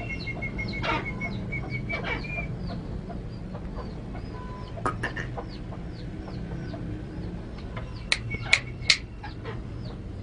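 A francolin (teetar) calling: a running series of short, high, falling chirps, a fast string of ticking notes in the first couple of seconds, and three loud, sharp calls about eight to nine seconds in.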